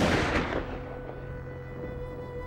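Dramatic music sting: a sudden loud crash right at the start that dies away over about a second, over a held chord of sustained notes that carries on into the closing-credits music.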